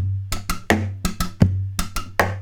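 Acoustic guitar played as a drum kit: bass-drum thumps struck on the guitar body, hi-hat clicks made by snapping the strings down against the end fret and soundhole pickup, and snare-type hits, in a bass, hi-hat, snare, hi-hat beat with the hi-hat doubled. Two heavy thumps, one at the start and one about a second and a half in, each leave a low ringing boom under the quicker clicks.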